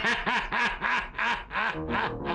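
A man laughing heartily in a rhythmic run of 'ha's, about three a second, each rising and falling in pitch. Steady background music comes in near the end.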